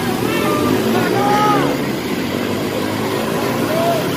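A water tanker's pump engine running steadily, driving a fire hose that sprays a strong jet of water, with a constant rushing hiss over the engine hum.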